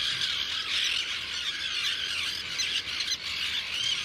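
A nesting tern colony calling: many terns at once, a dense, steady chorus of high, overlapping shrieking calls.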